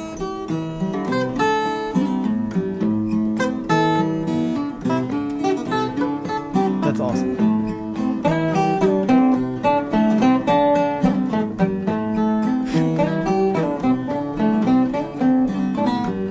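Two acoustic guitars playing Malian desert blues together, a pentatonic lead line over a fingerpicked accompaniment, in a continuous stream of plucked notes.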